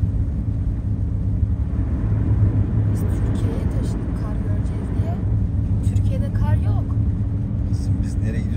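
Car cabin noise while driving on a snow-covered motorway: a steady low rumble of engine and tyres on the snowy road.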